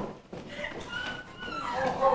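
A high, wavering voice giving short whimpering cries.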